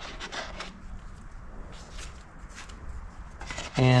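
A stirring stick scraping thick epoxy filler out of a plastic mixing cup onto a mixing board: soft, irregular scrapes and rubs.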